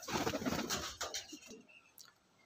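Andhra pigeons cooing, dying away after about a second and a half.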